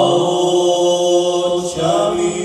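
Male voices singing long held notes of a Slovak folk song over keyboard accompaniment, stepping to a new note twice as the song draws to its close.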